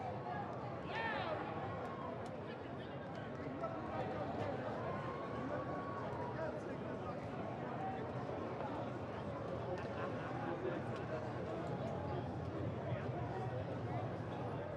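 Faint racetrack ambience: a steady murmur of distant voices, with light hoofbeats from racehorses slowing on the turf.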